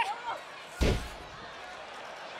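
A wrestler slammed down onto the wrestling ring's mat: one heavy thud, with the ring boards booming briefly, about a second in.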